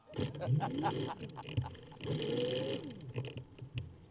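Recumbent trike pulling away from a stop: rumbling and scattered clicks from the rolling machine, with a rising whine twice.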